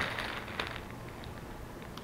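Faint handling noise: soft rustling with a few light clicks about half a second in, as items are picked up and moved.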